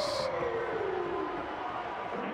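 Arena goal siren winding down after a goal, one long tone falling steadily in pitch and fading out.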